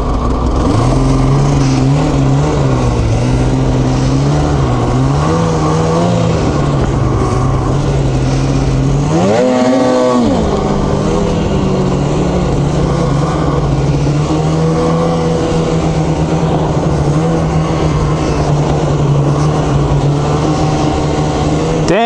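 Polaris 850 Patriot two-stroke snowmobile engine running at a steady cruising speed, with a brief rise and fall in pitch about nine seconds in.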